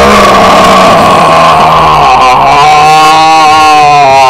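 A very loud, distorted, long held vocal groan that slowly sinks in pitch and cuts off suddenly just after the end.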